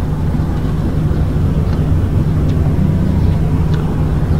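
A steady low hum and rumble of background noise in a hall, with a few faint ticks.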